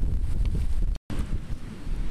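Wind buffeting the microphone, a loud low rumble. It cuts off abruptly about a second in, then resumes more softly.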